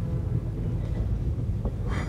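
A quiet orchestral passage with faint held notes, sitting under a heavy, steady low rumble typical of an old analog live opera recording.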